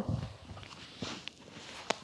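Faint rustling and soft knocks of a person rolling back onto their shoulders on a wooden floor, legs swinging overhead, with one sharp click near the end.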